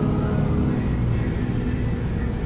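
Inside a moving transit bus: a steady low rumble of engine and tyres on the road, with road noise through the cabin.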